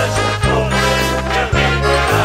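Brass-band carnival music in an instrumental passage, with no singing: held brass notes over a steady bass line, punctuated by a couple of bass-drum strokes.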